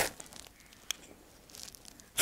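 Ferrocerium fire steel scraped against a steel knife to throw sparks into dry grass tinder: one sharp scrape at the start, then a faint click about a second in and light scratching near the end.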